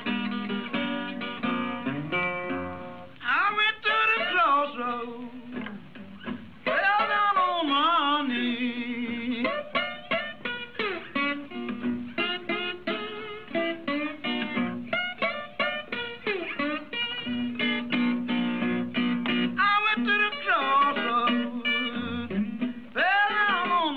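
A blues recording played as an example: acoustic guitar picking, joined about three seconds in by a singer whose lines bend and slide in pitch over the guitar.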